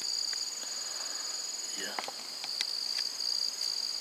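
Steady high-pitched chorus of singing insects: one continuous trill, with a second, finely pulsing one just above it.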